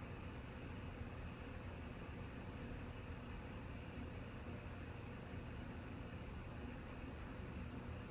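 Steady low background hiss with a faint hum underneath, unchanging throughout: room tone, with no distinct sound event.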